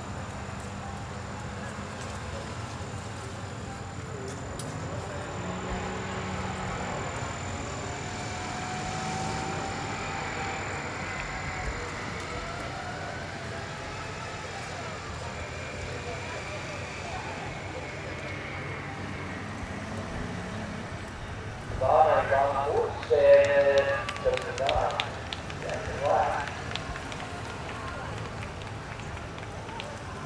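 Outdoor background noise with faint, distant talking. Loud speech from a nearby voice comes in for a few seconds about three-quarters of the way through.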